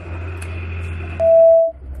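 A single electronic beep: one steady tone lasting about half a second, a little past the middle, over a low hum. The sound drops out briefly right after it.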